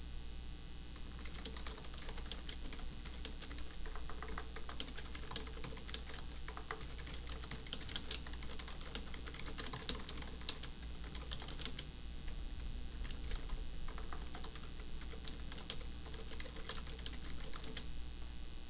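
Typing on a computer keyboard: irregular runs of key clicks starting about a second in, over a steady low hum.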